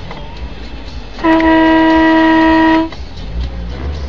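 A vehicle horn sounded in one steady, loud blast lasting about a second and a half, a warning honk as a dump truck swings across the car's path.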